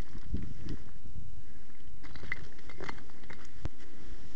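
Low, uneven rumble of wind and movement on a body-worn camera's microphone, with scattered clicks and rustles of gear shifting over rock.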